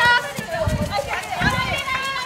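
Female soccer players shouting high-pitched calls to one another on the pitch during play, with a few low thumps underneath.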